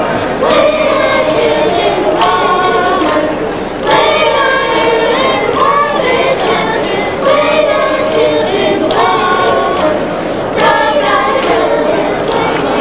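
Children's choir singing together in short rhythmic phrases, each lasting one to two seconds with brief breaks between them.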